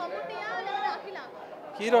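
Speech only: a man talking, with other voices chattering around him.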